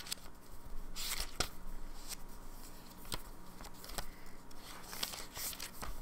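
Thin paper pages of a Hobonichi planner being flipped through by hand: a string of short, soft rustles and flicks as the pages turn.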